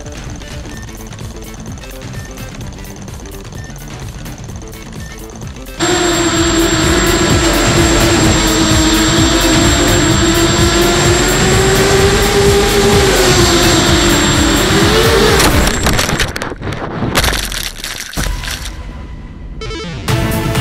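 Background music with a steady beat for about six seconds, then the loud onboard whine of an FPV quadcopter's electric motors cuts in, its pitch wavering with the throttle and rising near the end. In the last few seconds the sound breaks up into choppy bursts and dropouts.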